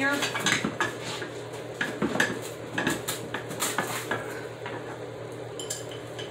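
Metal utensil clinking and scraping against a baking pan and a plate as a piece of oven-baked chicken is lifted out and served: a run of irregular light clicks and scrapes.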